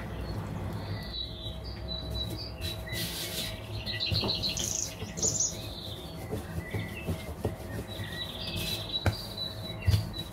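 Small birds chirping in short repeated high notes over a low steady hum, with a few light knocks of a wooden rolling pin on a wooden board as dough is rolled out.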